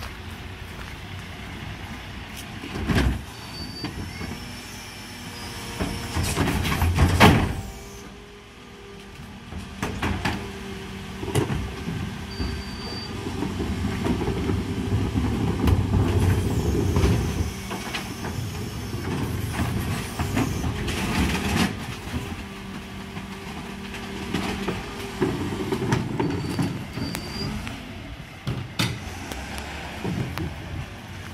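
Refuse truck (Mercedes Econic with a Geesink Norba MF300 body) running with its diesel engine while the rear bin lifters hydraulically raise and tip wheelie bins. There is a steady hum from the lifter hydraulics through the middle and sharp clatters and bangs as the bins are handled and emptied, the loudest about seven seconds in.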